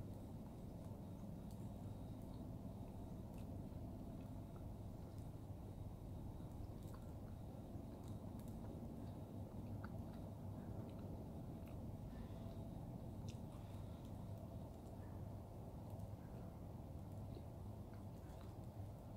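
A person chewing a soft pork-patty sandwich on a bun, faint small mouth clicks over a steady low hum.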